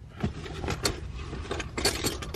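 Small clicks and rattles of a hand tool being handled against the hard plastic centre-console trim of a car, a flathead screwdriver readied to pry the trim up; the loudest cluster comes near the end.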